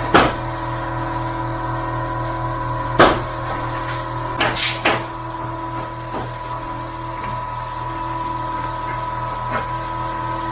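A steady machine hum holding a few fixed pitches, broken by sharp knocks: one at the start, one about three seconds in, and two close together just before five seconds.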